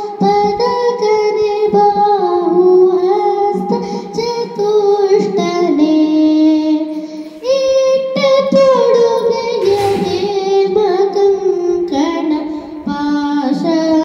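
Carnatic-style devotional song to Ganesha: a high, child-like voice singing held, gliding notes over a plucked-string accompaniment. The sound dips briefly about halfway through.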